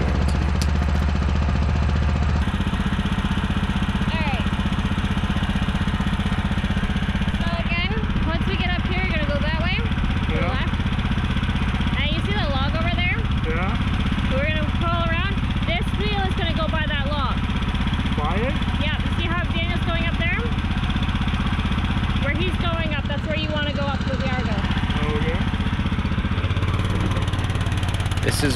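An old Argo amphibious ATV's engine running steadily on a trail, its low note shifting slightly a couple of seconds in. Indistinct voices talk over it through the middle.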